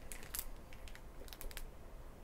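Thin clear plastic bag around a model kit's parts tree crinkling faintly as a hand grips and shifts it: a scatter of small crackles and clicks, a cluster about half a second in and another near a second and a half.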